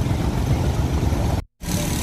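A bus engine idling with a steady low rumble. The sound cuts out completely for a moment about one and a half seconds in, then the rumble resumes.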